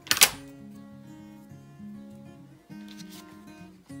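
A single loud, crisp snip of scissors cutting through thin cardboard just after the start, over background music with held notes.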